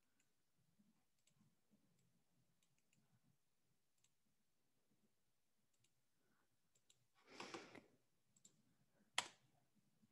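Near silence with faint, scattered clicks of computer work at a desk, a brief rustle about seven seconds in, and one sharp click a little before the end that is the loudest sound.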